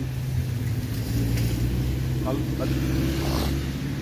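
A motor vehicle's engine running nearby, a low steady hum.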